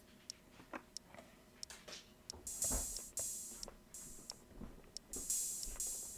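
Faint drum-machine hits from an Elektron Model:Samples, triggered by finger taps on Akai MPK Mini pads and coming out at uneven loudness as the velocity changes. Soft pad taps come and go throughout, with two louder hissy hits about 2.5 s and 5 s in.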